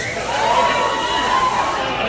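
Club audience noise, with one voice calling out in a single long held note that rises and then fades.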